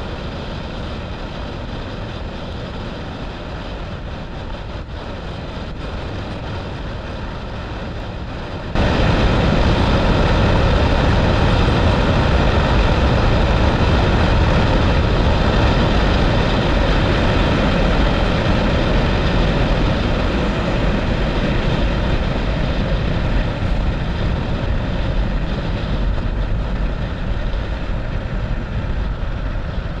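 Motorcycle running at road speed, with engine and wind noise. About nine seconds in the sound abruptly becomes louder and deeper, and stays that way.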